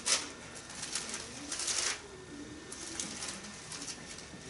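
Thin Bible pages being turned and rustled by hand: a few short papery swishes, the first right at the start and the longest just before the halfway point.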